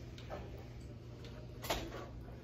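Ballpoint pen writing on paper on a counter: light scratches and small ticks, with one sharper tap near the end, over a steady low hum.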